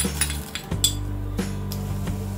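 A few sharp clinks of a steel spoon against a small glass bowl as dry split chickpeas (chana dal) are scraped out into a steel pan, over steady background music.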